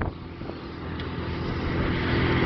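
A 40 hp outboard motor running steadily at speed under tow load, with the rush of the boat's wake; the sound grows slowly louder.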